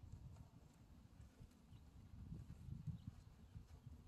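Near silence: faint, uneven low rumbling with no distinct sound standing out.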